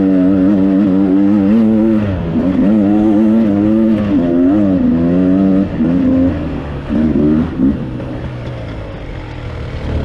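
Dirt bike engine running hard on a trail ride, its pitch rising and falling with the throttle and dipping briefly several times. Near the end it drops to a quieter, lower note.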